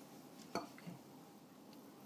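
Quiet kitchen room tone with one light, sharp click about half a second in and a fainter tick just after.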